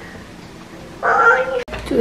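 One short, high-pitched cry about a second in, rising and then falling in pitch. A woman starts speaking right after it.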